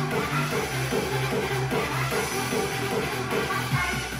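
A song playing through a floor wedge monitor loudspeaker, with its corrective EQ switched on to flatten the speaker's response in this floor position.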